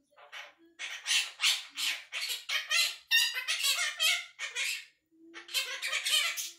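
Quaker parrot (monk parakeet) chattering and mimicking talk in rapid bursts of squawky syllables, with a brief pause near the end before it starts again.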